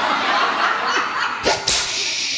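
Audience clapping with some laughter after a correct quiz answer, with a single thump about one and a half seconds in.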